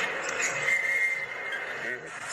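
Arena crowd noise with a referee's whistle blown once for a foul, a steady whistle lasting about half a second, starting about half a second in.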